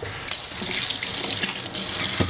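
Kitchen faucet turned on suddenly and running steadily, water splashing into the sink.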